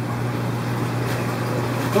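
Steady low electrical hum with an even hiss from a fish room full of running aquarium equipment, unchanging throughout.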